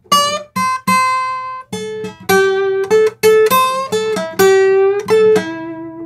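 Steel-string acoustic guitar fingerpicking a short blues phrase of about a dozen plucked notes, several bent slightly sharp with microtonal bends that stop short of a half step, giving a vocal-like, slightly out-of-tune edge. The last note sags back down in pitch near the end as the bend is let go.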